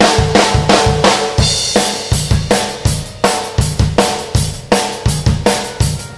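Acoustic drum kit played in a steady rhythm: snare drum flams, struck right hand first, alternating with bass drum kicks, with cymbal hits.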